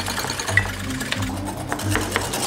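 Rapid, irregular clicking of utensils beating mayonnaise in bowls as it is stirred as fast as possible, over background music with a steady bass beat.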